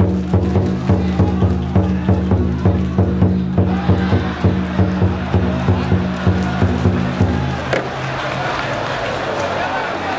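Music with a steady beat over a sustained low drone, which cuts off about three-quarters of the way through, leaving crowd chatter.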